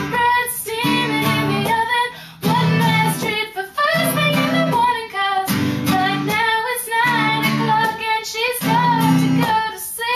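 A young woman singing a melody over strummed acoustic guitar chords that change about once a second.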